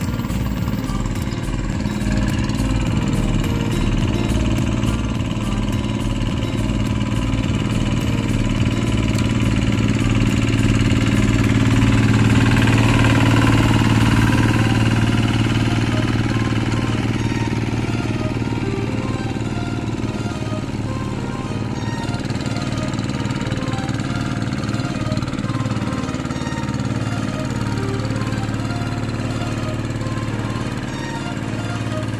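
A two-wheel hand tractor's single-cylinder diesel engine running steadily while tilling a flooded rice paddy, growing a little louder midway. Background music plays over it.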